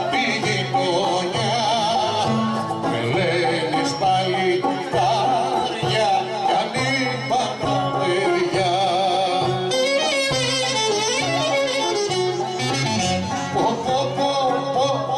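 Live Greek folk music for the kagkelari circle dance: a violin plays a heavily ornamented melody, with singing of the dance verses.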